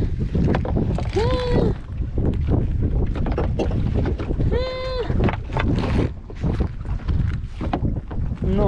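Wind buffeting the microphone over a steady low rumble while a wet nylon trammel net is hauled into the boat, with many short rustles and knocks of net and floats against the hull. Two short high calls stand out, about a second in and near the five-second mark.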